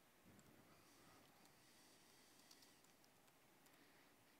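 Near silence of room tone, with a few faint clicks of laptop keys being typed.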